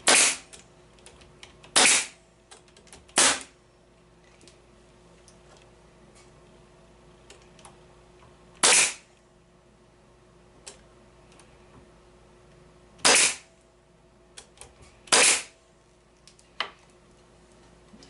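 Bostitch pneumatic staple gun firing staples into wooden bee frame joints: six sharp shots at uneven intervals, the first right at the start and the last about 15 seconds in, with a few faint clicks between them.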